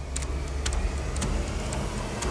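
Sound-design effect of sharp, evenly spaced ticks, about two a second, over a steady low rumble.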